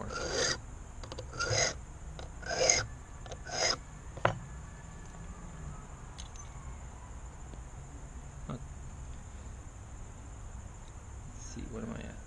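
Hand file rasping across a brass key blank, four short strokes about a second apart, taking a cut a little deeper during key impressioning. A single sharp click follows about four seconds in.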